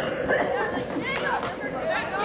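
Several voices shouting and calling out across an outdoor soccer field during play, with a sharp knock right at the start.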